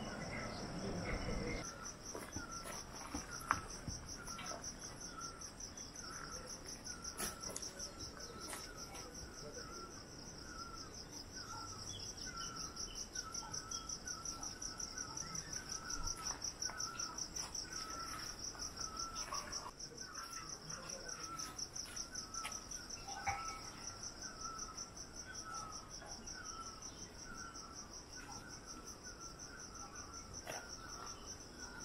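Insects trilling steadily in a high, rapidly pulsing drone, with a lower short chirp repeating about twice a second.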